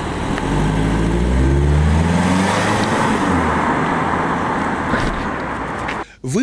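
Ford Focus hatchback driving by, its engine rising in pitch as it accelerates over the first two seconds, then a steady rush of tyre and road noise that slowly eases.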